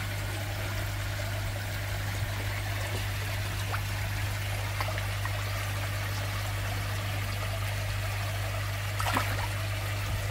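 Water trickling and running steadily in a koi tank, over a steady low hum.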